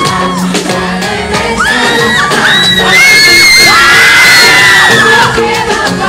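Live pop concert heard from the audience: amplified music and a singer's voice, with a crowd of fans screaming and cheering over it, loudest through the middle.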